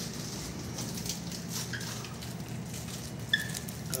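Faint clicks and rustling of hands handling a small magnet and its metal fitting, over a steady low room hum. A brief high-pitched chirp sounds about three seconds in.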